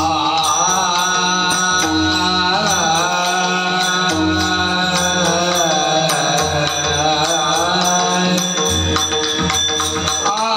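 Warkari bhajan: a group of men singing a devotional melody together, kept in a steady rhythm by brass taal hand cymbals struck over and over, with the low strokes of a pakhawaj barrel drum underneath.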